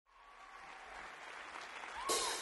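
Concert audience applauding, fading in from silence and growing louder.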